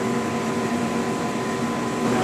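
Steady machine hum of laboratory equipment, with several steady tones held evenly throughout.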